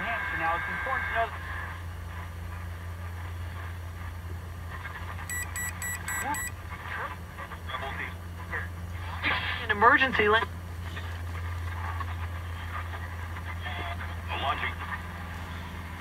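Zenith 7S529 tube radio's speaker playing a weak AM broadcast station, voices faint under a steady low hum, while the set is tuned to 1400 kc for alignment. About five seconds in comes a quick run of five short beeps.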